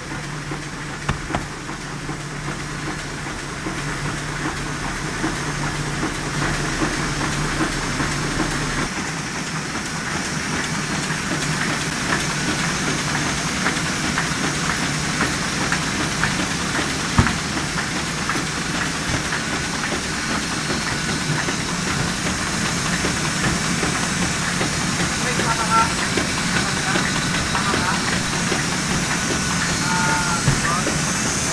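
Printing press machinery running in a press room: a loud, steady mechanical clatter with many fine rapid ticks. A low hum drops away about nine seconds in, and there is one sharp knock about halfway through.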